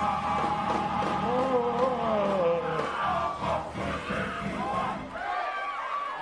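Church congregation shouting praise, several voices crying out and overlapping, with music underneath.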